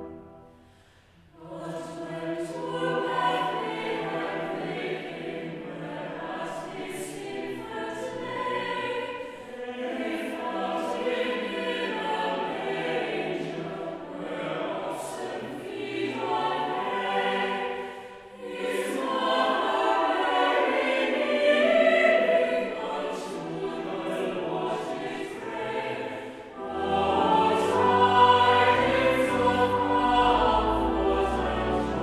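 Mixed chapel choir singing a carol in phrases, beginning about a second in after an organ chord has just ended, with brief breaks between phrases. Near the end, low organ bass notes join the singing.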